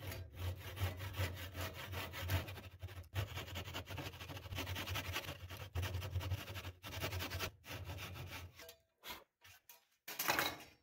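Hand saw cutting a spline kerf across the mitered corner of a laminated 2x6 rocker clamped in a vise: continuous back-and-forth sawing strokes with a few short pauses. The sawing stops about nine seconds in, followed by a few brief knocks.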